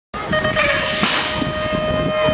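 BMX electronic start-gate tone: the long final beep of the start sequence, one steady high tone that begins just after the start and holds on, while the gate drops with a knock about half a second in. A rushing noise of the riders setting off down the start ramp follows under the tone.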